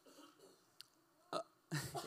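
A man at a handheld microphone gives a short breathy chuckle: a brief sharp vocal sound about two-thirds of the way in, then a breathy laugh near the end, over faint room tone.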